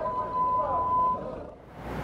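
Background sound from the street footage: a steady high-pitched tone held for about a second, with faint wavering sounds beneath it. It cuts off, and the sound sinks to a low hiss.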